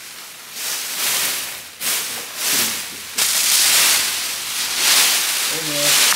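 Plastic packaging film crinkling and rustling as it is handled, in several loud surges.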